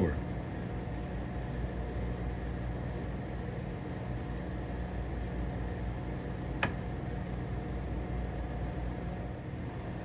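Steady mechanical hum from a draft beer dispenser while beer fills a bottom-fill cup, with a single sharp click about six and a half seconds in, at about the point where the pour stops.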